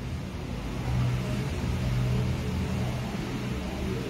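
A low, steady mechanical hum with a rumble under it, swelling about a second in and easing off near the end.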